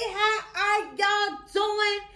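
High-pitched sung intro jingle: a voice holding about four short notes in a row, with brief breaks between them.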